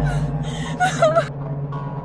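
A woman gasping and whimpering in distress: short breathy gasps, with a brief whimper about a second in, over a low steady music drone.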